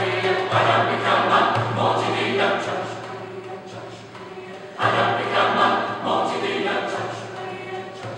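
Mixed choir of men's and women's voices singing, with low voices holding sustained notes under the upper parts. The singing fades to a softer passage partway through, then swells back loudly about five seconds in and tapers off again.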